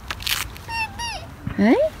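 A toddler's high-pitched wordless squeal about a second in, then a short rising vocal sound near the end.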